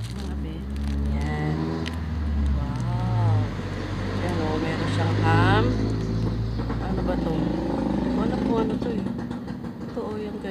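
A motor vehicle engine running close by with a low, steady drone, its pitch rising about five seconds in as it revs.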